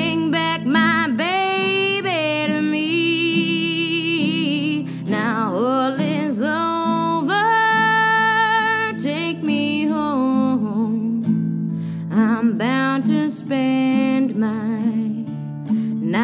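A woman singing long held notes with vibrato over an acoustic guitar. Her voice breaks off briefly about two-thirds of the way through while the guitar carries on, then returns.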